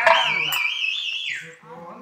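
A high whistling tone with a regular wobble in pitch, held for about a second and a half, then sliding down and stopping. Fading voices lie underneath.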